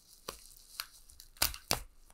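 Bubble wrap crinkling and crackling as it is pulled off a stack of plastic card slabs, with a few sharp crackles, the loudest two close together near the end.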